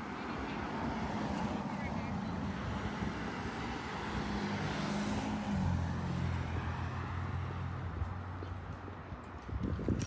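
Street traffic: a motor vehicle's engine running nearby, its low note dropping to a deeper pitch about halfway through as it passes, over a steady hiss of road noise.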